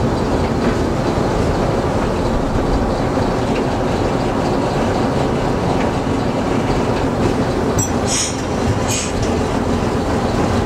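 Small diesel shunting locomotive heard from inside its cab, its engine running steadily with the rumble of the wheels on the track as it moves along. Two brief high-pitched sounds come near the end.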